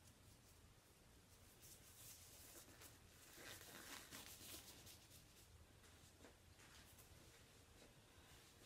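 Near silence, with faint scratchy tapping and rustling through the middle: a paintbrush being flicked and tapped to spatter white acrylic paint.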